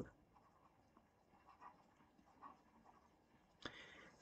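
Near silence, with a few faint taps and scratches of a stylus writing digits on a tablet.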